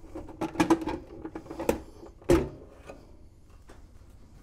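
Top cover of a Sony CDP-611 CD player being lifted off its chassis: a series of short knocks and scrapes, the loudest about two and a half seconds in.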